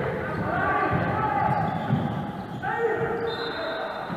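Basketball being dribbled on a wooden gym floor, a few bounces ringing in the large hall, under voices calling out.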